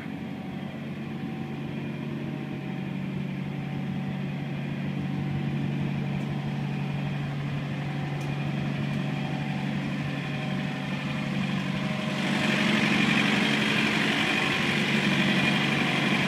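Thermo King SB-210 trailer refrigeration unit running steadily, a diesel engine hum with fan noise. It grows louder, with a marked rise in the upper hiss about twelve seconds in.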